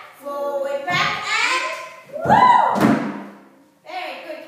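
Young children's voices calling out and sing-songing, with a loud thud about two and a half seconds in.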